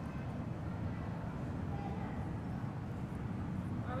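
Steady low rumble of room noise in a large hall, with faint voices in the background.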